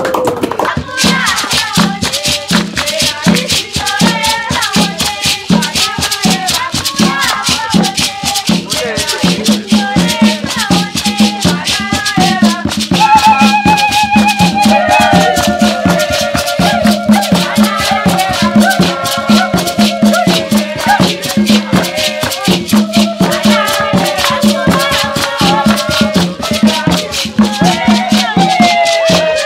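Traditional Zimbabwean dance music: upright hand drums beating a steady rhythm under fast, continuous shaking of rattles, with singing. From about halfway a high voice holds long wavering notes over the drumming.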